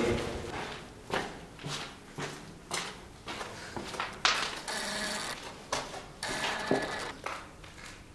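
Footsteps scuffing along a gritty concrete floor, irregular steps about once or twice a second, with a couple of longer scrapes.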